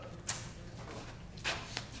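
Cord plug of an old manual telephone switchboard being handled and pushed into a jack on the panel: a sharp click a quarter second in, then two more clicks near the end.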